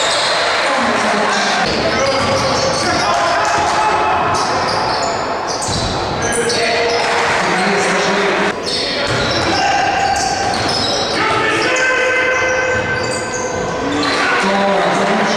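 Basketball game sound on a hardwood court: the ball bouncing as it is dribbled, with voices calling out throughout.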